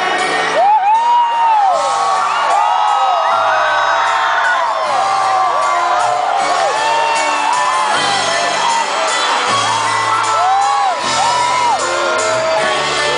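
Live rock band playing through a concert sound system, a bass line moving in long low notes, with the audience whooping and screaming over the music throughout, loudest about a second in.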